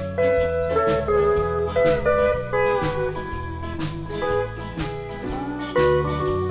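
Live country band playing an instrumental break, with a steel guitar taking the lead in sliding notes over a bass line and drums striking about once a second.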